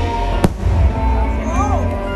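A single sharp bang of an aerial firework shell bursting about half a second in, over loud show music with heavy bass.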